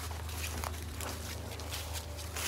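Faint footsteps through grass over a steady low rumble.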